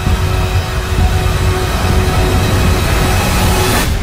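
Loud trailer score building to a dense swell with held tones over a deep rumble, then cutting off suddenly just before the end.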